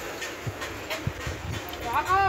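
Background voices with scattered short knocks, and a short rising cry that begins right at the end.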